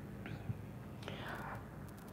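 A woman's faint, breathy murmur between sentences, with a soft knock about half a second in.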